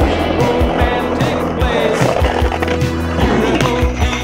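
Skateboard wheels rolling over an asphalt street, heard under a music track with a drum beat.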